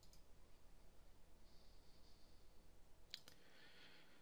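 Near silence with a few faint clicks from a laptop touchpad: one just after the start, then a quick pair about three seconds in.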